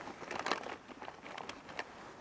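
Rustling and clicking handling noise close to the microphone, with jacket fabric brushing near it, in a quick run of short scrapes and ticks that is loudest about half a second in.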